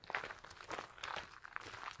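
Footsteps crunching on a gravel path: a quick run of short, irregular steps.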